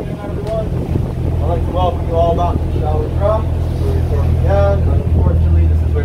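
A boat's engine running steadily, a low rumble that grows a little louder in the second half, with wind buffeting the microphone.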